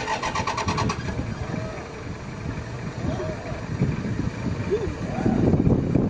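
A vehicle engine starting, with a rapid pulsing in the first second, then running, under indistinct voices.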